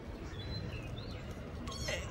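Kitten meowing: faint high cries early on, then a louder meow near the end.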